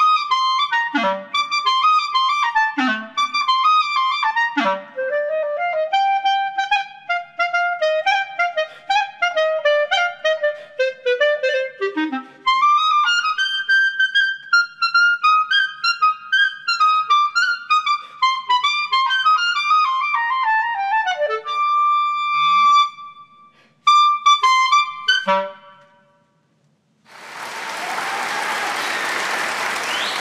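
Solo E-flat clarinet playing the closing bars of a fast Venezuelan pajarillo: quick runs of short notes and wide leaps, then a held high note and a few final notes. After a second of silence comes a steady wash of applause.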